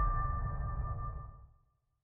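Logo sting of an end card: a single ringing electronic chime note over a deep low hit, dying away to silence over about a second and a half.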